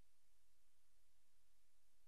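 Near silence: faint steady line hiss with a low hum.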